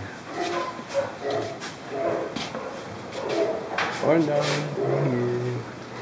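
Indistinct voices murmuring, with a few short clicks scattered through.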